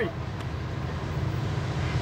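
Steady low engine rumble.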